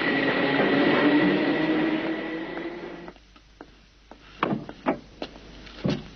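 A tram running past with a steady whine over its rolling noise, which cuts away about three seconds in. Several sharp knocks and clicks follow.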